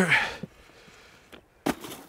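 A sharp knock about one and a half seconds in, with a faint click just before it and a brief scuffle after: a DJI Spark drone in its hard case being dropped onto frozen, snow-covered ground.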